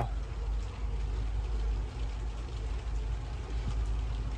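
Steady low background hum with no distinct events.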